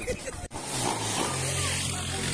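A brief laugh, then street commotion: a motorcycle engine running under a steady noisy din with voices calling out.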